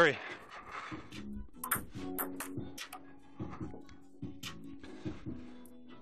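Table tennis rally: a dozen or so sharp clicks of the ball off paddles and table, irregularly spaced, over music and voices from a television in the background.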